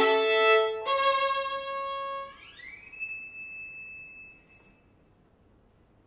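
Violin played with the bow: a few falling notes and a held note, then a slide up in pitch to a high note that fades away, followed by near silence for the last second and a half.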